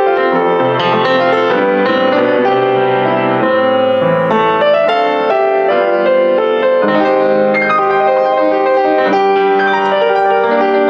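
Offenbach PG-1 baby grand piano being played: a continuous, flowing passage of melody and chords, with notes left ringing over a sustained bass line.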